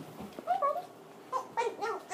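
A pet cat meowing: a short call about half a second in, then a few more near the end.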